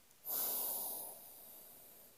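A person's sharp breath into the microphone: a sudden hiss about a quarter second in that fades over about a second and a half.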